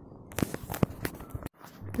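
Metal spoon clicking and scraping against a small glass bowl as a thick mayonnaise sauce is stirred: a handful of sharp clicks, then the sound cuts off suddenly.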